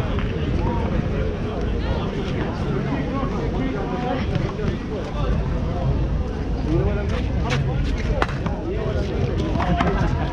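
Indistinct chatter of several people talking around an outdoor court, with two sharp smacks about seven and eight seconds in.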